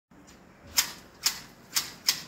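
Hand shears snipping leafy shrub branches while shaping a topiary: three crisp cuts about half a second apart.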